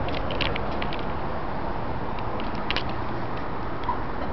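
Steady low outdoor rumble with a few short, high clicks scattered through it.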